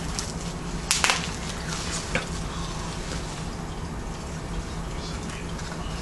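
Paper and foil gift wrapping being handled and pulled open, with a sharp crinkle about a second in and a few lighter rustles and clicks after, over a low steady hum.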